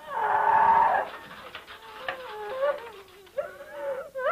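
A person wailing: a loud held cry for about the first second, then a quieter, wavering moan that swells again near the end.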